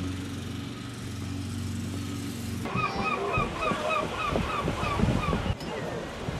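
A steady low machine hum, then, after a cut, a bird calling a fast series of rising-and-falling notes, about three a second, over the wash of waves on a rocky shore.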